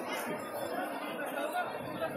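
Crowd chatter: many voices talking at once in a steady, dense babble.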